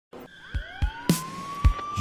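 Intro music starting up: a siren-like tone rising in pitch and then holding steady, over a few kick-drum beats and a snare hit.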